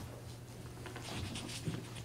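A quiet pause in a meeting room with a low steady hum, and from about a second in, faint scratching of a pen writing on paper.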